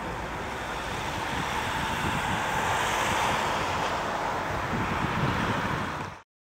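Road traffic on a roundabout: a steady noise of tyres and engines from passing vehicles, swelling as a vehicle goes by about two to three seconds in.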